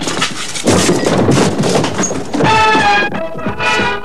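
A noisy crash and clatter of boxes and clutter falling for about two seconds, then music with held notes comes in about two and a half seconds in.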